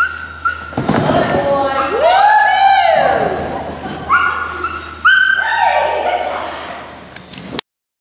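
A small herding-type dog yipping and whining in excitement while running an agility course, in a series of high, bending calls. One long rising and falling whine comes about two seconds in, and sharper yips follow around four and five seconds in. Short high chirps repeat throughout.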